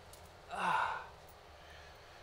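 A man's short breathy sigh, falling in pitch, about half a second in.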